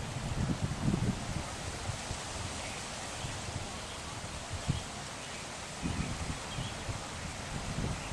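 Wind buffeting the microphone in irregular low gusts over a steady outdoor hiss of rustling leaves.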